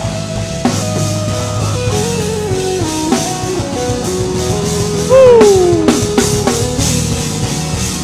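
Gospel band music with a drum kit, held notes stepping between pitches, and a loud note sliding down in pitch about five seconds in.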